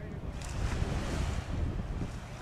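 Small waves washing up a sandy beach, one wash swelling about half a second in and fading near the end, over wind rumbling on the microphone.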